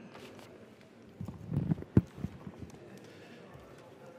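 A cluster of dull knocks and thumps as a poster easel is carried in and set up, with one sharp knock about two seconds in.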